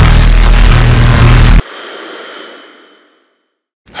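Loud cinematic trailer sound effect: a dense noisy blast over a deep bass drone, cut off suddenly about one and a half seconds in, its echo fading out over the next second or so.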